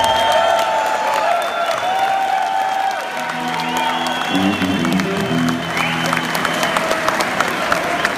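Live electric guitar, a Stratocaster, played lead with notes that slide up into long held tones, and bass guitar coming in about three seconds in. Audience clapping and cheering runs underneath.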